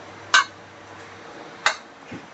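A metal spatula knocks twice against the side of a wok while stirring a simmering broth: two short, sharp clinks about a second apart, over a low steady hum.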